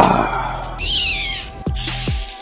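A short high-pitched cry that falls in pitch about a second in, after a brief noisy rush at the start. A click and a short hiss follow near the end.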